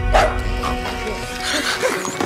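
A French bulldog barking over background music, the loudest bark just at the start and smaller yips after it.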